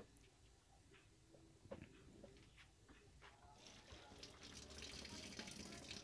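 Water running faintly into the washing machine's plastic wash tub, setting in about halfway through and growing louder toward the end, with a few small knocks before it.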